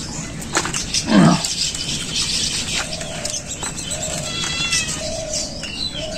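Domestic cat meowing: one loud call about a second in, falling in pitch.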